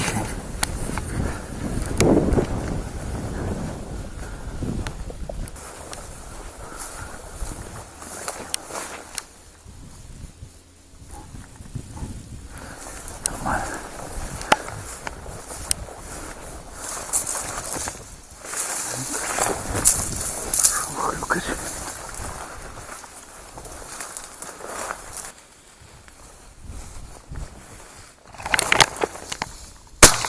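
Footsteps and rustling as a hunter walks through a field and tall dry grass, with wind buffeting the microphone in uneven gusts. A single shotgun shot goes off at the very end.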